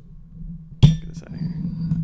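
A microphone being repositioned on its arm, heard right at the microphone: a sharp knock a little under a second in with a short ring after it, then rubbing and rattling as it is moved.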